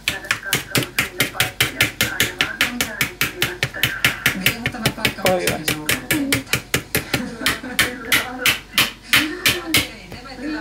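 Coiled wire whisk beating stiff whole-wheat dough in a plastic bowl, knocking against the bowl in a fast, even clicking of about four or five strokes a second. The dough is beginning to firm up as the flour is worked in.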